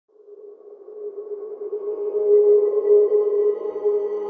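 Intro music sting for a logo reveal: a sustained electronic tone that fades in from silence and swells over the first two to three seconds, with higher overtones joining as it grows.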